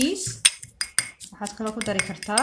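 A metal fork clinking and scraping against a small glass bowl while stirring dried herbs, in a quick run of sharp ticks, with a voice talking over it.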